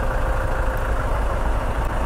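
Motor vehicle engines idling in stopped traffic, a steady low running sound.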